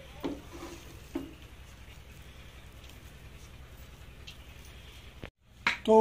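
Two brief knocks of a serving spoon against a plate as soft semolina halwa is spooned out of a metal pot, about a quarter-second and a second in, over a steady low hum. The sound cuts off suddenly near the end.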